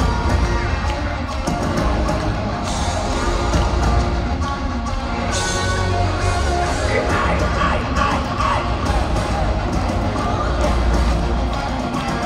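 A power metal band playing loud through an arena PA, recorded from among the audience, with the crowd cheering and yelling over the music.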